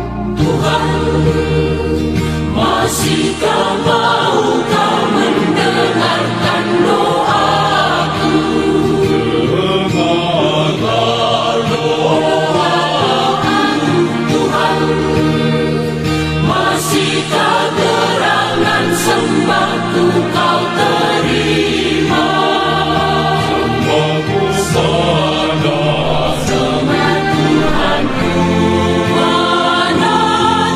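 Choir singing a Christian worship song in Indonesian, over instrumental accompaniment with sustained low bass tones.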